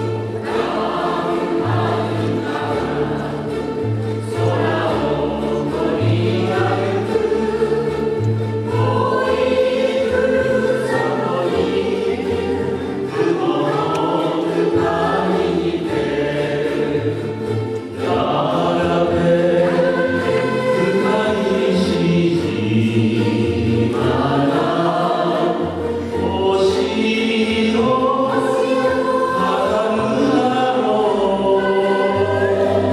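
A ukulele ensemble playing a slow song, with a group of voices singing the melody over a bass line that steps from note to note.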